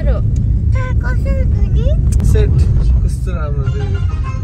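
Steady low rumble of road and engine noise inside a moving car's cabin, with people talking over it.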